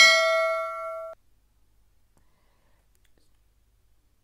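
A notification-bell ding sound effect from a subscribe-button animation: one bright ringing chime with several overtones that cuts off suddenly about a second in, then near silence.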